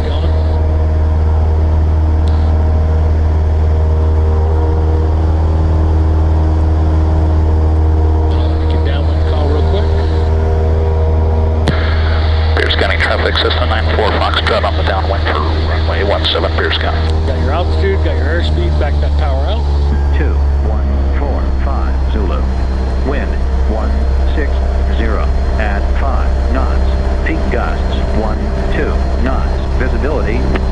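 Cessna 172's piston engine and propeller droning steadily in flight, heard inside the cabin.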